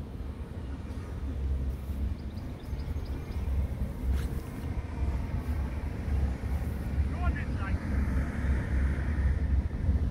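Wind buffeting the phone's microphone: a low rumble that surges and falls in gusts, with a single faint click about four seconds in.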